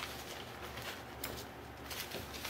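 Faint rustling and crinkling of fusible paper and cotton fabric being laid down and smoothed by hand, with a few short crackles about a second in and near the end, over a low steady hum.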